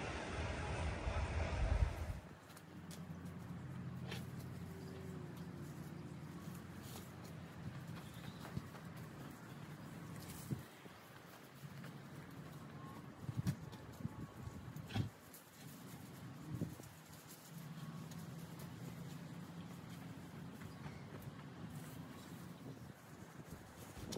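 Wind buffeting the microphone for the first two seconds, then faint outdoor yard work: a low steady hum under a few scattered knocks and scrapes of a rake or shovel working mulch, the loudest of them about halfway through.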